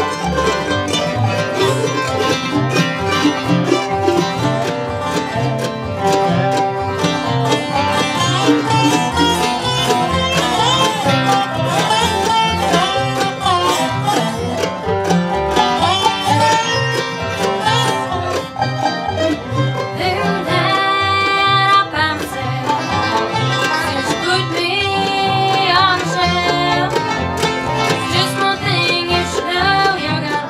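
Live bluegrass band playing: a rapidly picked mandolin and a resonator guitar played with a steel bar, over a steady plucked upright bass.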